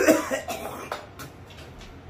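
A man coughing hard from the burn of an extremely hot chip: the loudest cough comes right at the start, with a few smaller ones over the next second.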